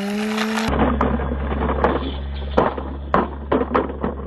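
A plastic toy cement mixer truck tumbling down a rock, knocking and clattering against it several times over a steady low hum. In the first second, a drawn-out pitched sound cuts off abruptly.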